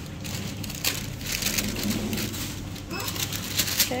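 Grocery-store background: a steady low hum, scattered rustling and handling noises, and faint voices.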